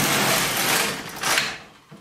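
Carriage of a Silver Reed LK150 mid-gauge knitting machine pushed across the needle bed to knit a short row of shoulder shaping, some needles held out of work. A steady rushing clatter that ends with a sharper burst and dies away about one and a half seconds in.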